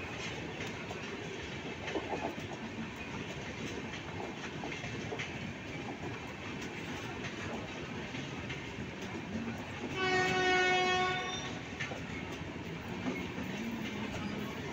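Passenger coaches of the 15707 Amrapali Express running past as the train pulls out of the station: a steady rumble with the clatter of wheels over rail joints. About ten seconds in, a train horn sounds once, a single steady note lasting just over a second.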